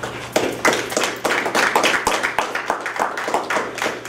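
A small group of people applauding, the separate hand claps easy to pick out.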